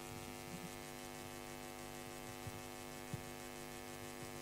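Steady electrical mains hum with a stack of even overtones, with a few faint small clicks.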